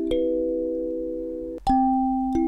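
Plate kalimba, metal tines on a flat board, played by thumb: a note is plucked just after the start and rings on over earlier notes, fading slowly. A little past halfway the ringing cuts off abruptly and a new pair of notes is plucked.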